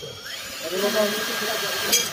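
Cordless drill spinning up with a rising whine, then running steadily at high speed as it bores into an aluminium cabinet frame; it cuts off at the end.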